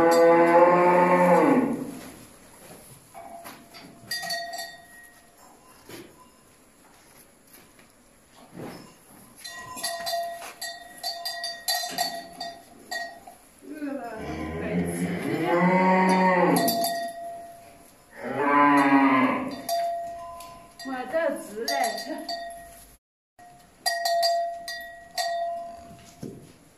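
Hungry cattle mooing: three long, loud calls, one at the start and two more about halfway through. Between the calls a bell hanging on a cow's neck clinks in short runs. The cattle have gone unfed all day.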